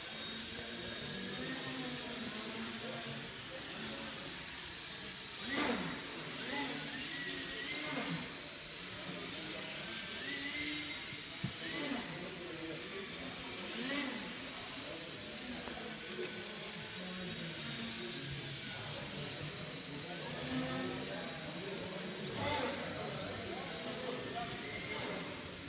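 Electric motor and propeller of an MT Foamies Vapour indoor foam RC plane whining, its pitch rising and falling again and again as the throttle is worked, in a large echoing sports hall.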